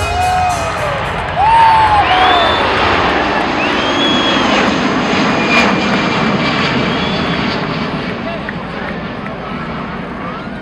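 Boeing C-17 Globemaster III's four turbofan engines during a low flypast: a dense jet rumble that swells sharply about a second and a half in, then slowly fades as the aircraft passes.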